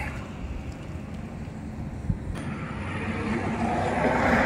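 Road traffic going by: a steady rumbling hiss with no distinct strikes, growing slowly louder over the last second or two.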